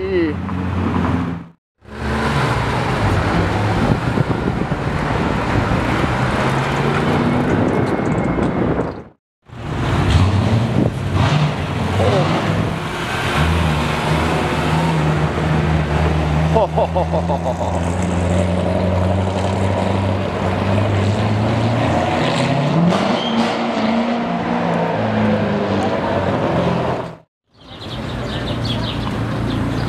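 Supercar engines running as the cars move slowly along a city street, in separate clips that each stop suddenly with a brief silence before the next. A McLaren 600LT's twin-turbo V8 opens it. Later a steady engine drone gives way to a short rising rev near the end.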